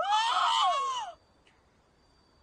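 A high-pitched scream of shock, about a second long, that rises in pitch and then falls away.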